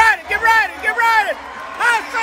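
A loud person's voice in short syllables that rise and fall sharply in pitch.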